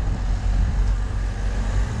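Outdoor street noise: a steady low rumble under a fainter hiss, with no distinct events.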